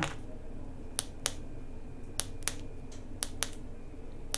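The press button of a cordless rechargeable LED light pad, pressed three times close to the microphone. Each press gives a pair of sharp clicks about a quarter second apart, and the presses step the pad through its brightness levels.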